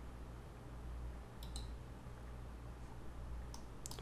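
Computer mouse button clicks: a pair of clicks about a second and a half in, then three more just before the end, over a faint low steady hum.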